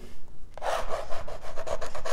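A drawing tool scribbling on a stretched canvas: rapid back-and-forth scratchy strokes that start about half a second in.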